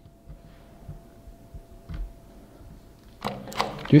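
Quiet room tone with a faint steady high whine and a few soft low bumps; a couple of sharp clicks come near the end.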